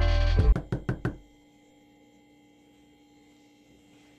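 Music playing that ends about a second in, with a quick run of five or so sharp knocks as it stops. Then a faint steady hum close to silence.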